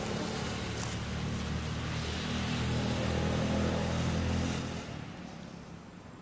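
A motor engine running steadily at a low, even pitch, dropping away about five seconds in.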